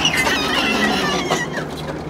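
A small child squealing, high-pitched and gliding, stopping about a second and a half in.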